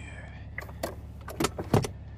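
Car cabin hum from a moving car, with a few irregular sharp clicks and rattles, the loudest near the end.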